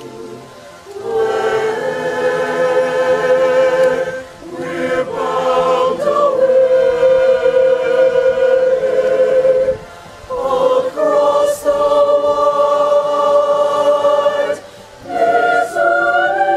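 A choir singing slow, sustained chords in long phrases, with brief breaths between phrases.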